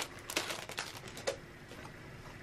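Clear plastic card sleeve crinkling as a handmade card is slid out of it: a few brief crackles and ticks that stop after about a second and a half.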